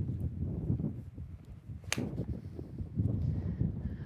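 A single crisp click of a 60-degree wedge striking a golf ball on a full swing, about two seconds in, over a steady low rumble of wind on the microphone.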